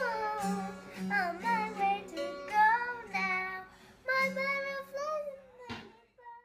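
A young girl singing long, held notes of a song while strumming a small children's acoustic guitar, with the strum pulsing about twice a second. A single sharp knock comes just before the sound stops at the end.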